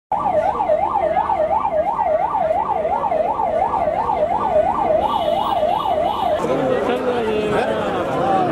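A siren wails in a fast up-and-down sweep, about two and a half cycles a second, then cuts off about six seconds in. A crowd's mingled voices follow.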